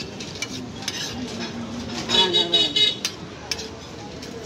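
Metal spatula scraping and clicking against a flat iron griddle while meat chunks fry. About two seconds in, a vehicle horn honks in a few quick toots, the loudest sound.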